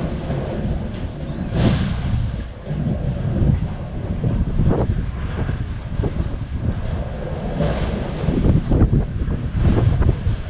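Sea blowhole under a metal grate in the coastal rock: a steady low rumble with surges of rushing air as waves push up through it, the strongest about one and a half seconds in and again near eight seconds. No water spouts from the grate.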